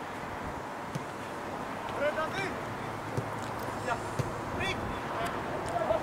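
Distant shouts from football players on the pitch: short calls a few seconds apart over a steady haze of wind noise, with a few faint knocks.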